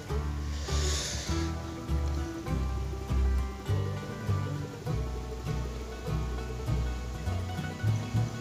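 Background music with a steady, repeating bass line, and a brief hiss about a second in.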